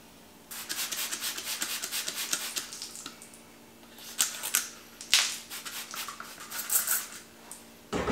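Hand spray bottle of sanitizer spritzing a rubber bung in several short hissing bursts. Before that comes a longer crackly, rattling hiss.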